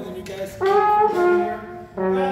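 Dixieland jazz band playing, with trombone, saxophone and brass horns. It is lighter at first, then a loud held chord comes in about half a second in and lasts until just before the end.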